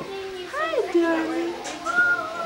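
Toddler's wordless vocalizing: a call that rises and falls, then settles into a held note, with a higher note starting near the end.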